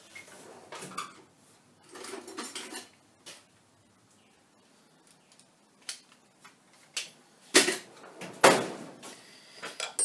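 Metal hand tools clinking and clattering while someone rummages for an allen key, with scattered clicks, then a few sharp knocks in the second half, the two loudest near the end.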